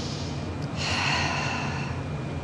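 A woman's deliberate, audible exercise breathing: a faint airy breath at first, then a longer, louder breath out, starting just under a second in and lasting over a second.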